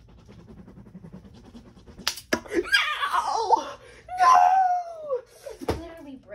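A sharp smack about two seconds in, followed by a boy's yelling and laughing with a long falling cry, and another sharp knock near the end.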